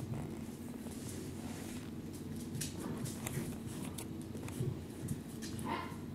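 Black poodle puppy's toenails clicking on a vinyl kitchen floor as it moves about, scattered light ticks over a steady low hum.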